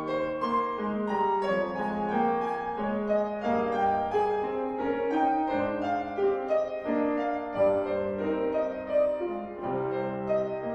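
A grand piano played four hands by two pianists: a continuous classical duet with notes moving steadily across the middle and lower range.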